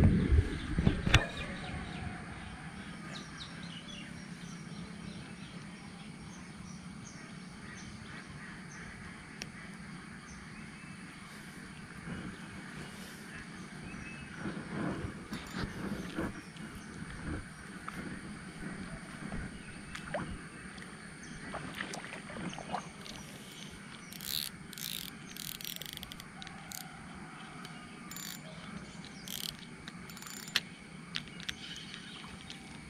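Outdoor ambience beside a pond, opening with a loud thump. After that a quiet steady background runs on, broken by scattered knocks and clicks from handling the camera and a spinning reel, with a cluster of sharp clicks a few seconds before the end.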